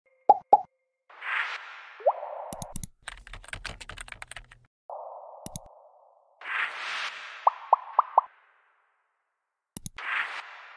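Animated-intro sound effects: two quick pops, a whoosh, a run of rapid keyboard-typing clicks, a single click, then another whoosh carrying four quick rising plops, and a click near the end.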